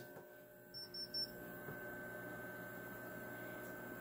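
A few short, faint, high-pitched electronic beeps about a second in from a Magnum PowerTrack MPPT solar charge controller powering up just after its breaker is switched on, over a faint steady electrical hum.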